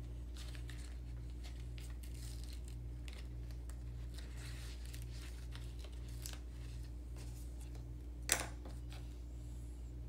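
Faint rustling and clicking of small craft-kit pieces being handled and fitted together by hand, with one sharp click a little after eight seconds in. A steady low hum runs underneath.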